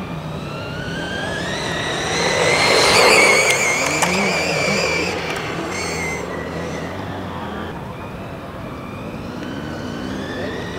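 Electric motor of a nitro-to-electric converted RC Formula One car whining under acceleration. The pitch rises for the first couple of seconds and the whine is loudest about three seconds in. It then wavers at a high pitch and fades away after about six seconds.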